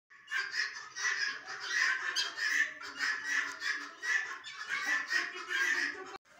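A flock of penned pheasants calling without a break, the calls overlapping and swelling in waves a little more than once a second.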